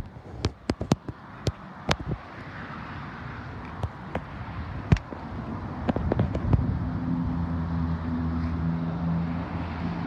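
Car door and handling noises as someone gets out of a small hatchback: a run of clicks and knocks, with a sharp door-shutting thud about five seconds in, then a steady low hum.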